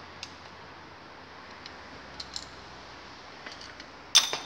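A few faint, sparse metallic clicks of a screwdriver turning a screw out of a quad-bike engine's cylinder head, over a steady low background hum.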